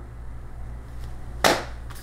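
A single sharp knock about one and a half seconds in: a foil-packed bag of coffee set down on a granite countertop. A steady low hum runs underneath.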